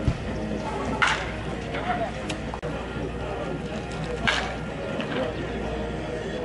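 Baseball bat hitting pitched balls: two sharp cracks about three seconds apart, over a steady murmur of voices in the stands.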